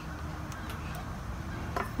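Quiet outdoor background noise, a steady low rumble with no clear event, and a couple of faint clicks near the end.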